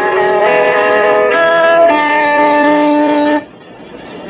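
Electric guitar ringing out a slow chord progression, the chords changing about once a second; the last chord is held and then stopped short about three and a half seconds in.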